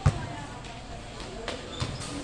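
A futsal ball kicked hard: one sharp thump, then two lighter thuds of the ball on the concrete court near the end.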